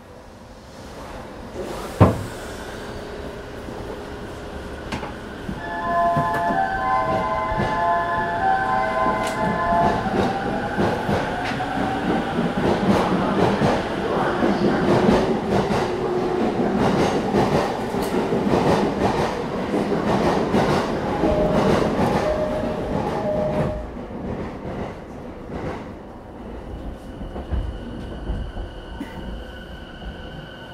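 Sound inside an E217-series commuter train car standing at a station: a sharp thump about two seconds in, then a louder stretch of rail noise with short chime-like tones, which falls away near the end to a steady high whine and low rumble.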